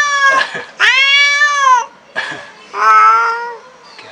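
Angry black cat yowling: a run of long, loud, drawn-out calls with a shorter one in between, a threatening, defensive cry.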